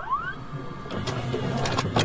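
Videocassette recorder mechanism starting playback: a short rising whine at the start, then a steady motor whirr with a few sharp mechanical clicks about a second in and near the end.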